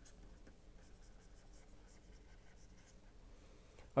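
Stylus writing on a tablet screen: faint scratches and light taps as a short phrase is handwritten.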